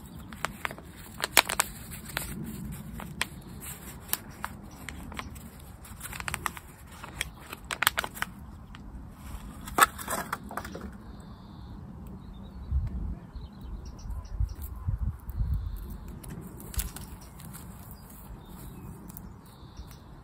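Thin black plastic plant pot crinkling and crackling as it is squeezed to free a tomato plant's rootball, with soil handled and pressed down by hand. The sharp crackles come in the first half, loudest about ten seconds in, then give way to softer low bumps.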